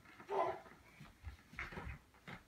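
A young child's short squeal about half a second in, followed by a few soft thumps of a rubber ball and small feet on a carpeted floor.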